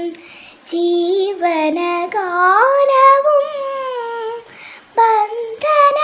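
A young girl singing a melody solo, without accompaniment, holding and sliding between notes, with two short pauses: one just after the start and one at about four and a half seconds.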